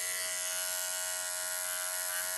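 Cordless electric pet clipper running with a steady buzz, trimming the hair on a puppy's paw.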